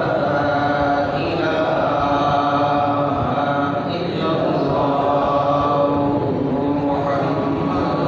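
A voice chanting a devotional Islamic recitation in long, drawn-out, wavering notes that glide between pitches.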